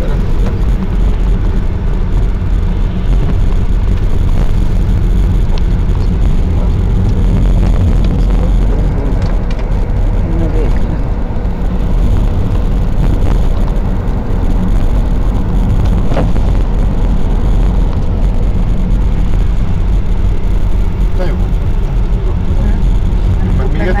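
Car interior noise while driving: a steady low rumble of engine and tyres heard inside the cabin.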